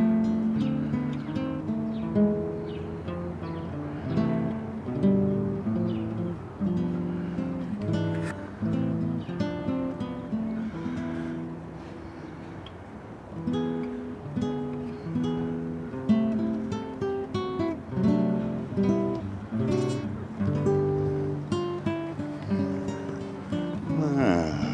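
Background music: acoustic guitar picking and strumming.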